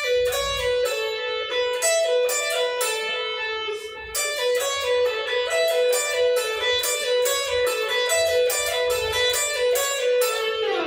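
Electric guitar playing a fast, repeating B-minor pentatonic lick: picked notes linked by hammer-ons and pull-offs in a steady stream, with a brief break about four seconds in.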